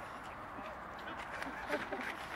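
Men laughing in short, broken bursts, louder near the end.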